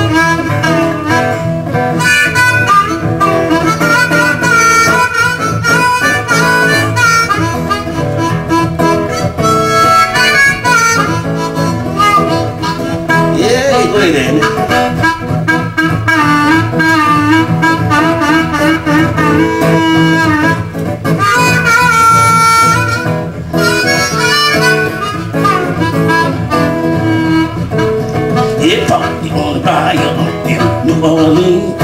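Blues harmonica solo, played with the hands cupped around the harmonica and a vocal microphone, bending and wailing over acoustic guitar accompaniment.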